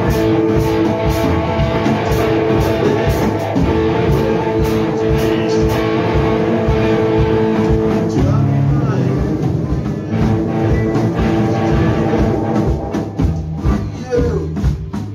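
Rock music on guitar and drum kit: held guitar chords over a steady drum beat, with the chords changing about eight seconds in.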